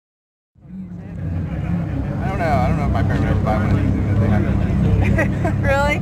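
Lamborghini Huracán's V10 idling with a steady low rumble, starting about half a second in, with people talking over it.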